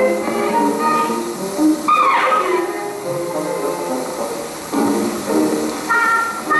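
Music from an old film's soundtrack playing back, several melody lines moving together over a light steady hiss, with a brief bright gliding figure about two seconds in.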